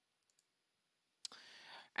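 Near-silent room tone with a faint computer-mouse click under half a second in. About a second and a quarter in comes a sharp click, then a short, soft in-breath before speaking.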